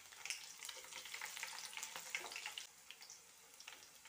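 Fresh curry leaves sizzling and crackling in hot oil in a stainless steel kadai, with mustard seeds, garlic and dried red chillies: a tempering for tomato pickle. A soft hiss with small pops that dies down after about two and a half seconds.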